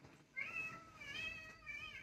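Two faint, high meow-like calls, the first rising in pitch and the second held fairly steady.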